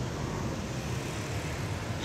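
Steady low rumble of motor traffic.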